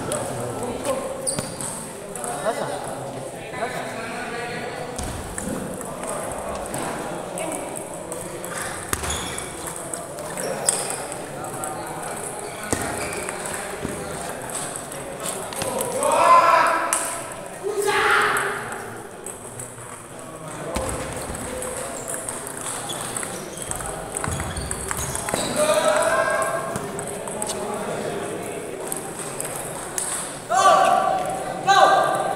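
Table tennis ball clicking back and forth off paddles and the table during rallies, in short runs of quick ticks. People's voices and shouts carry in the background, loudest about halfway through and again near the end.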